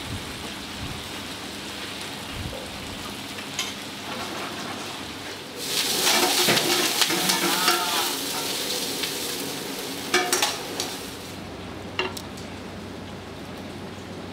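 Food frying and sizzling with stirring, a steady hiss that swells to its loudest for about two seconds around the middle. Sharp clinks of metal tongs against a bowl follow as pasta is plated.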